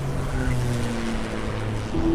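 A car driving at steady speed: a constant low drone with road and wind noise.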